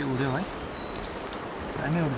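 Steady rain falling on wet foliage. Two short vocal sounds cut through it, one at the start and one near the end, each bending in pitch.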